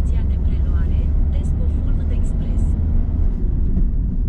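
Low, steady engine and road rumble of a small car, heard from inside the cabin as it drives off.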